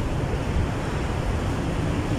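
Wind blowing across the microphone, a steady low rush.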